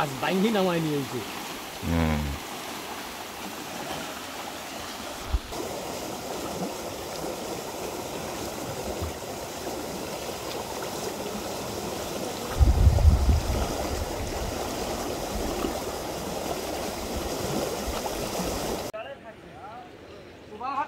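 Fast ebb-tide current rushing through a narrow mangrove creek in a steady churning rush of water, the outflow of a new-moon spring tide. A brief low rumble comes about two-thirds of the way through.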